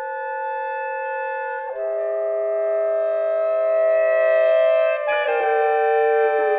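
Saxophone quartet holding sustained, microtonal chords. The chord shifts to new pitches about two seconds in and again near the end.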